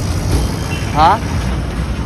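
Steady low rumble of road traffic, with vehicles passing close by. A man says a short 'haan' about a second in.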